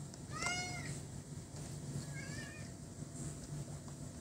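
A cat meows once, about half a second in, its pitch rising and then falling; a shorter, fainter, higher call follows around two seconds in.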